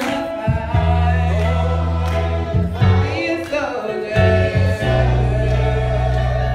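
Gospel choir singing, with a woman's voice leading on a microphone over held keyboard bass chords that change every second or two.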